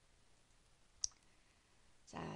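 Near silence with one short, sharp click about a second in.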